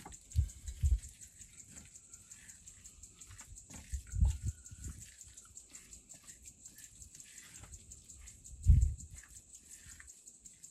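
Hand mixing a wet scone dough in a stainless steel bowl, with soft squelching and a few dull thumps, the loudest near the end.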